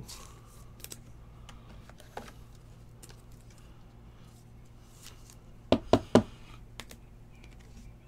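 Light clicks and faint rustling from a trading card being handled and slid into a soft plastic penny sleeve, then three sharp taps in quick succession about six seconds in.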